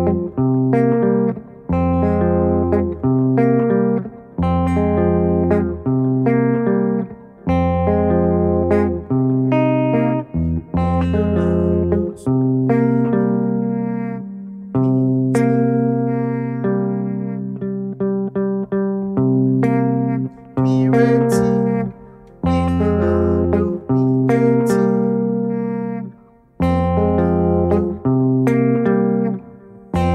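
Clean electric guitar fingerpicked in a repeating pattern: the thumb plucks low bass notes on the fourth and fifth strings and the index finger picks the third string. It cycles between F minor and C minor seventh chords, with a low note roughly every second.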